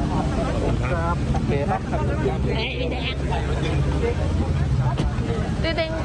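A car engine idling close by, a low steady hum, as the sedan gets ready to pull away, with voices around it and a single sharp click near the end.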